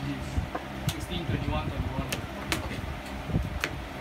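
Voices talking in the background, with several sharp clicks of trading cards in plastic sleeves being picked up and laid down on a playmat.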